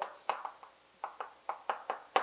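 Chalk tapping against a blackboard while writing: a series of about seven short, sharp clicks at irregular intervals.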